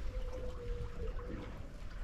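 Water lapping against the hull of a small anchored fishing boat, with a low steady rumble. A faint steady tone runs underneath and stops about a second in.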